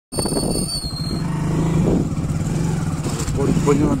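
A motor vehicle's engine running steadily, with a low, even pulsing. Voices start near the end.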